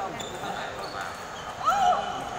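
Chatter echoing in a sports hall during a table tennis rally, with light ping-pong ball taps, then a short loud shout from a player near the end as the rally ends.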